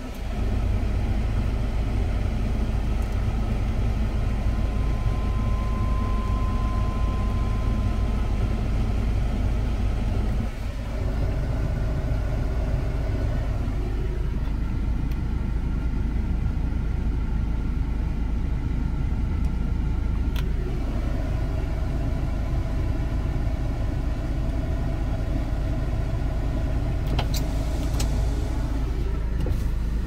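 Hyundai Terracan's engine idling steadily in neutral, heard from inside the cabin.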